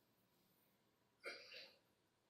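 Near silence, broken once just past the middle by a brief, faint throat or mouth sound from a man at a microphone, like a short catch of breath.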